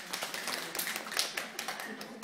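A small audience applauding: many hands clapping in a quick, irregular patter that thins out near the end.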